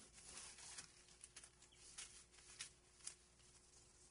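Near silence, with faint scattered rustles and light ticks from a surface being wiped by hand.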